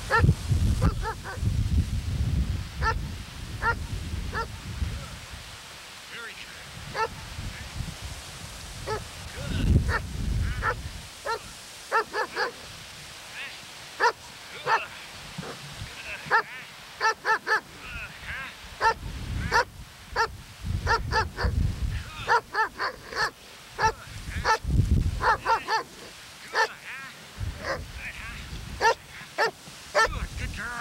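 A young dog on leash barking over and over in quick runs of short barks, more densely in the second half, worked up during bitework training. Low rumbles on the microphone come and go.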